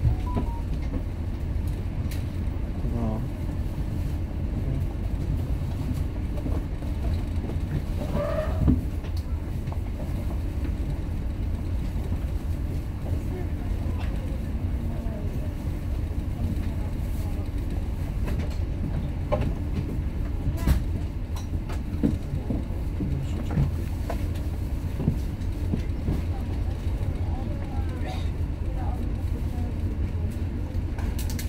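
The ferry's engines running at idle alongside the pier, a steady low rumble, with faint passenger voices now and then.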